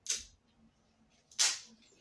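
Two sharp cracks, about a second and a half apart, as plastic beer pong balls are smashed on a wooden floor.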